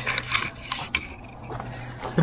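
Handling noise from a camera held close: a string of short, soft clicks and rustles in the first second, then quieter rustling.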